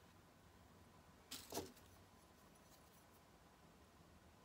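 Near-silent room tone, with a brief double handling noise about a second and a half in: hands and a wooden modelling tool at work on a leather-hard clay mug.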